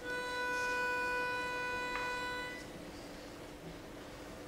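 Pitch pipe sounding one steady note for about two and a half seconds, giving a barbershop chorus its starting pitch before it sings.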